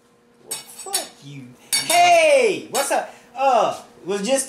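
A spoon clinking and scraping in a bowl of chili as a taste is taken, along with several short pitched sounds that rise and fall, like murmured vocal noises.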